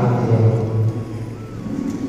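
A man's voice through a microphone and loudspeakers, stopping about a second in, after which a low steady hum remains.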